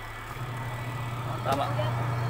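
Haier twin-tub washing machine motor running with a steady low hum that grows louder about a third of a second in.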